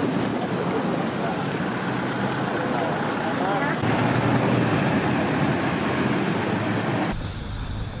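Outdoor street ambience: steady road traffic noise mixed with the faint chatter of people walking past. The background changes abruptly about four and seven seconds in.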